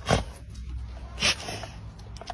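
Dogs nuzzling face to face, with two short sharp snorts about a second apart over a low steady hum.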